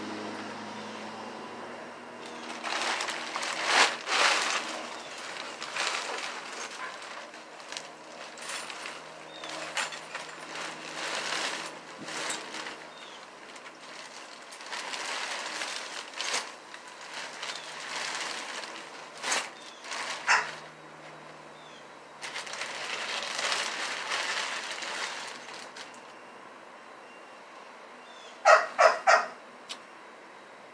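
Rustling, shuffling and knocking as belongings and a cloth tote bag are handled and packed into a wire shopping cart, with scattered sharp clicks. A quick run of short, high chirps near the end.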